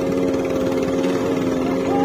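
Motorcycle engine held at steady revs, a constant even drone, while the bike is worked over rocky ground.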